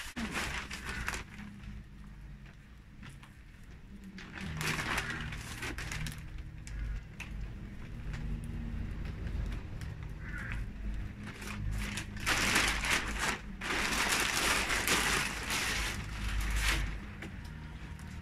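A plastic compost bag rustling and crinkling as potting compost is scooped out and sprinkled into a seed tray, in a short spell about five seconds in and a longer, louder one from about twelve seconds.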